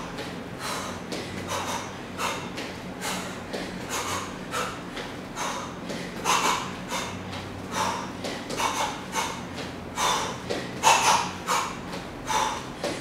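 Short, sharp exhalations, roughly two a second, pushed out with each punch while shadowboxing, over a faint steady low hum.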